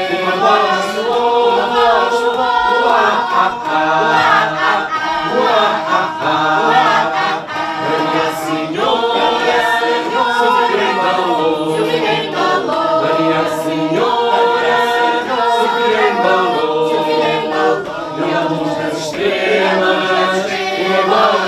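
A mixed group of men, women and children singing a song in Portuguese together, with sharp percussive taps keeping a regular beat about once a second.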